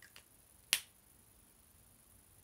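Two faint ticks, then one sharp click about three-quarters of a second in, from handling a whiteboard marker.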